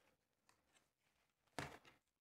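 Near silence: room tone, with one brief soft noise near the end.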